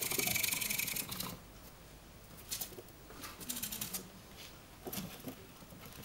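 Gerbils scrabbling and scratching on a cardboard box, in bursts: a loud one in the first second, then shorter ones about two and a half, three and a half and five seconds in.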